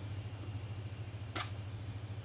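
A single short, sharp click about two-thirds of the way through, over a steady low hum.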